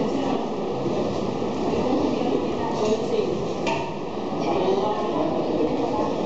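Indistinct chatter of many voices in a room, steady throughout, with one brief knock a little over halfway through.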